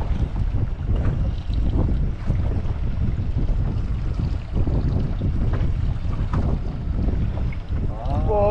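Wind rumbling on the microphone aboard an open boat at sea, a steady low buffeting.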